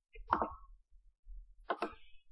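Computer mouse clicks near the narration microphone: a short click about a third of a second in, then a quick pair of clicks near the end as a right-click menu is opened.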